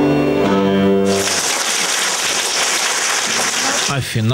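A children's bandura ensemble's final chord rings for about a second and dies away. The audience then applauds steadily to the end.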